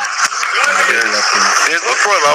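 Speech only: a man talking over a phone line.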